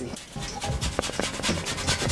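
Orange peel being zested on a metal box grater, in quick repeated scraping strokes.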